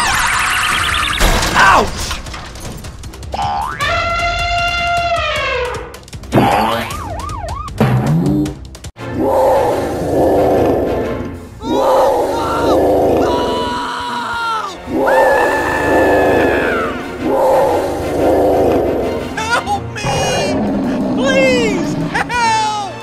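Cartoon sound effects: a springy boing-like effect whose pitch rises and then falls, and short gliding tones, followed from about nine seconds in by background music with a regular repeating beat.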